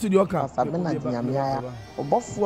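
A man's voice speaking into a microphone in a drawn-out, wavering way, holding one long syllable in the second half.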